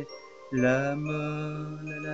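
A male voice singing: a short pause for breath, then about half a second in he enters on a long, steadily held low note in the refrain of a French pop song.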